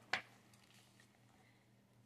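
Near silence with one brief soft paper flap near the start, as a freshly turned picture-book page settles.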